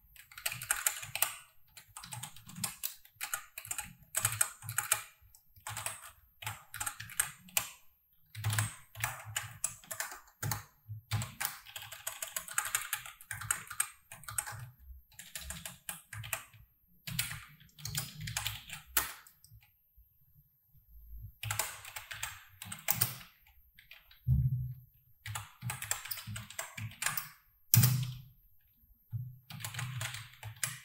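Computer keyboard being typed on in quick runs of key clicks, with short pauses between runs. There is a longer break of about two seconds about two-thirds of the way through.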